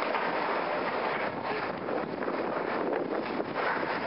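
Steady rushing wind noise on the microphone of a camera carried at a run.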